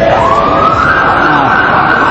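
Emergency vehicle siren wailing, its pitch rising over the first second and then holding high.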